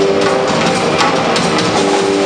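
A live band playing with keyboard, electric bass and drum kit, with drum strikes running through the held notes.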